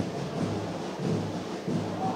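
Faint stadium ambience: fans in the stands singing and drumming, heard low beneath the broadcast.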